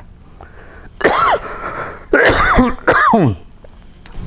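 A man clearing his throat close to a lapel microphone: three short, harsh bursts about a second apart, each with a falling voiced edge.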